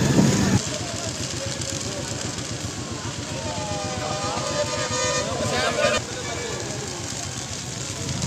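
Wheat-stubble field fire burning steadily with a dense crackle. A voice is heard at the very start, and a drawn-out tone that falls and then rises in pitch sounds in the middle, stopping about six seconds in.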